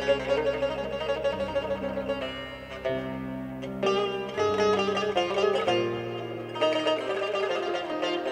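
Azerbaijani tar played live: a fast plucked melody with rapid repeated notes over sustained low notes that change every second or two.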